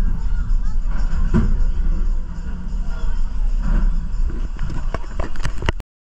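Steel roller coaster train rolling slowly along the track into the station with a steady low rumble, people's voices mixed in. The sound cuts off suddenly near the end.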